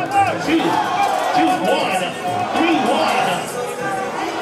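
A large crowd shouting and chattering over music in a big hall, with several voices sweeping up and down in pitch like calls and whoops.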